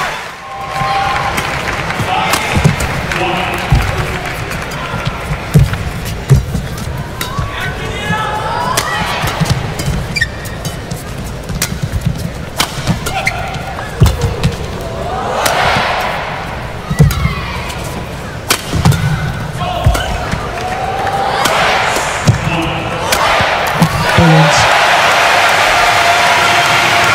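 Badminton rally: rackets striking a feather shuttlecock at irregular intervals, each hit a sharp crack, with arena crowd noise swelling several times between the hits.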